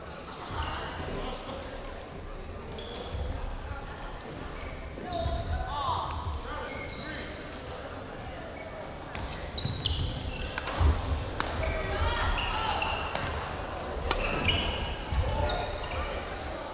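Badminton rally on a gym's hardwood floor: sneakers squeaking and sharp racket hits on the shuttlecock, the hits clustered in the second half, with voices echoing around the hall.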